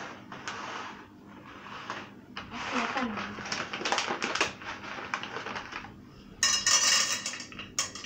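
Popcorn kernels poured from a plastic bag into a stainless steel pot, a run of quick small clicks and clatters against the metal, with a louder burst of clatter near the end.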